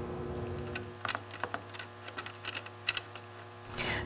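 A few faint, light clicks and taps from hands handling an aluminium mounting panel, over a low steady hum.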